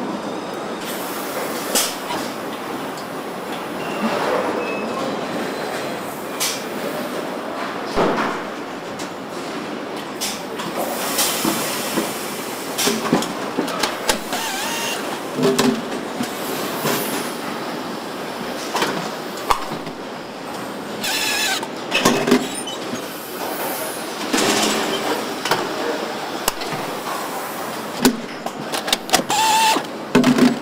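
Car-factory assembly-line noise: a steady mechanical hum broken by frequent metallic clanks and knocks and short hissing bursts from tools at the line.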